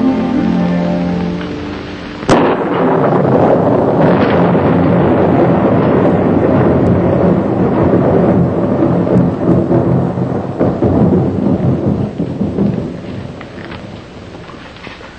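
A held orchestral chord dies away, then a sudden sharp thunderclap about two seconds in, followed by a long stretch of rolling thunder and heavy rain that fades near the end.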